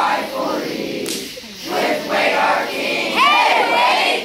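A group of children's voices shouting and chanting together, breaking into a high rising-and-falling whoop about three seconds in.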